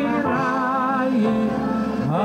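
A man singing live into a microphone, holding long notes with a wide vibrato and changing pitch about halfway through, over musical accompaniment.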